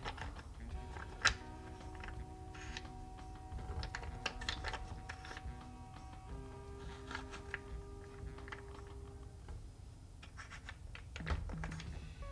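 Small wooden puzzle blocks clicking and knocking against one another as they are lifted and set back down, in irregular light clacks with one sharper knock about a second in. Soft background music with long held notes plays underneath.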